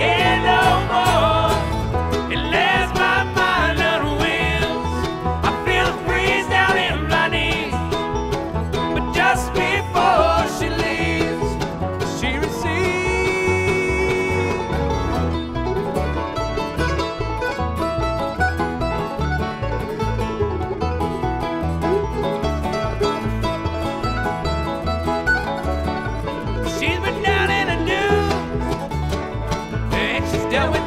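Bluegrass string band playing an instrumental passage, with banjo picking prominent over a steady rhythm.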